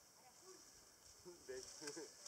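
Quiet woodland ambience: a steady faint high-pitched hiss of insects, with faint distant children's voices and a few light rustles of dry leaves underfoot in the second half.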